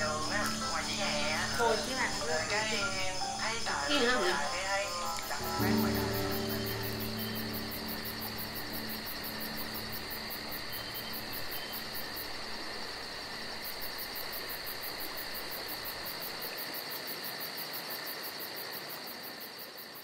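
Night insects, crickets, chirping in a steady fast pulsing trill that takes over after voices in the first few seconds and fades out near the end.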